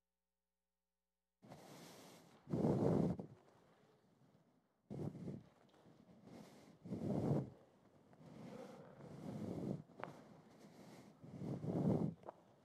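After a second and a half of dead silence, there are soft thumps and rustles, four or five of them a couple of seconds apart, as a stack of carpet squares is carried and squares are set down on the floor.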